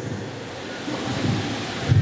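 Handling noise from a handheld microphone as it is passed from hand to hand: rustling and low rumbling, with a thump near the end as it is taken in hand.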